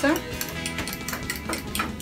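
Eggs being beaten in a bowl: quick, rhythmic clicks of the utensil against the bowl, about four a second, over background music.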